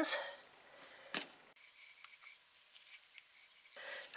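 Quiet sounds of hands working a ball of cookie dough studded with raisins over a plastic cutting board, with one sharp click about a second in and a few faint ticks after it.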